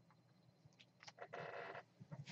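Near silence, with a faint brief rustle of trading cards being handled about a second and a half in.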